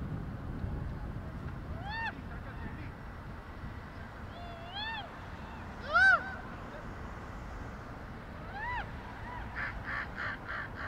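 A bird calling: four single rising-and-falling calls a few seconds apart, the third the loudest. Near the end comes a quick run of short caws.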